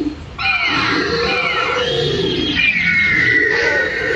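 Recorded dinosaur roar played by an animatronic dinosaur model's loudspeaker. It is one long, loud call with several falling sweeps in pitch, starting about half a second in.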